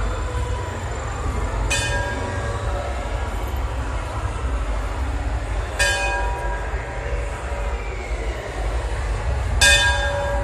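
A temple bell struck three times, about four seconds apart, each strike ringing briefly over a steady low rumble.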